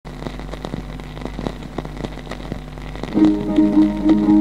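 Record surface crackle, irregular clicks over a low steady hum. About three seconds in, the instrumental introduction of a song begins with held notes.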